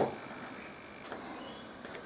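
Faint handling sounds from a small tube of contact cement being squeezed and dabbed onto a thin wooden board: a short tap right at the start, then a few soft clicks.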